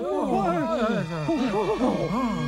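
A man's voice giving wordless, sing-song cries, its pitch swinging up and down in quick arcs without a break.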